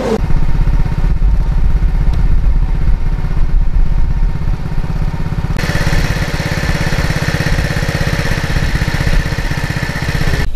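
A small engine running steadily close by, a fast even pulsing rumble, with a harsher higher whine joining about halfway through.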